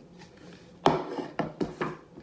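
Hand tapping the plastic lid of an empty ground-coffee can as a homemade drum: one sharp tap about a second in, the loudest, then three quicker taps near the end.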